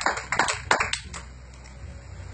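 A few scattered hand claps, about six in the first second, dying away into quiet room tone.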